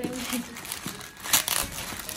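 Clear plastic packaging bag crinkling and rustling as a water bottle is handled and unwrapped, with the loudest crinkles about a second and a half in.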